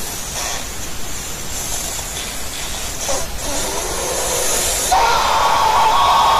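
A man's drawn-out hissing 'ffff' that builds louder and breaks into a strained, rasping 'uuuu' about five seconds in: the rage-face 'FFFUUUU' outburst.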